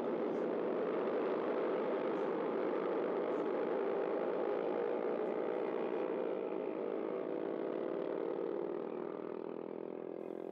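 Several small racing motorcycles running together at a steady, moderate pace, their engines blending into one even drone that gradually fades over the last few seconds.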